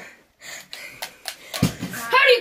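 Rustling and light knocks from a handheld camera being moved, with a dull low thump about one and a half seconds in.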